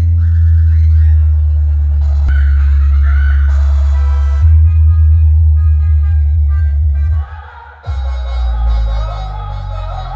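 Loud electronic dance music played through a DJ sound system's power amplifiers, with heavy, sustained bass. It cuts out briefly about seven seconds in, then comes back.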